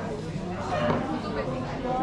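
People talking at and around the tables of a busy restaurant dining room, the voices indistinct.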